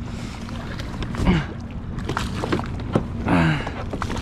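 Steady low rumble of a fishing boat's motor idling close by. Short vocal exclamations come about a second in and again near three and a half seconds, with a few small knocks.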